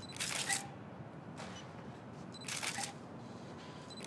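Medium-format camera shutter firing twice, a couple of seconds apart, each release a short crisp click-and-whir.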